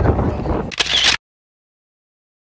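Outdoor noise from a crowd walking along a dirt track, with wind rumbling on a phone microphone, cut off abruptly just over a second in; dead silence follows.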